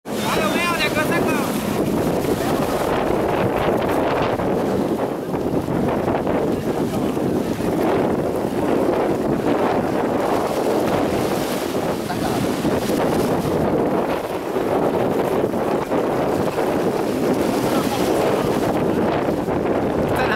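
Steady wind on the microphone over small waves washing in the shallows at the water's edge.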